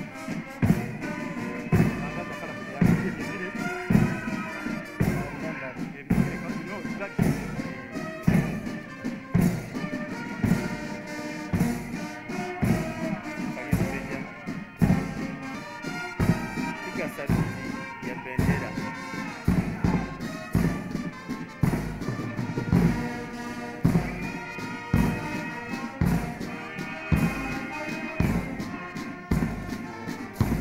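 Military brass band playing a march, with sousaphones and other brass carrying the tune over a bass drum beating steady time.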